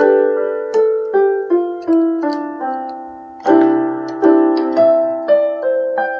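Electronic keyboard in a piano voice playing a chord progression: held chords under single notes that step downward, then a fuller chord with a low bass note about three and a half seconds in, with notes stepping up over it.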